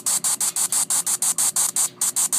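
Spirit Box Gold ghost-hunting app sweeping through static on a tablet's speaker: rapid, evenly spaced bursts of hiss, about ten a second, with a brief break just before the end.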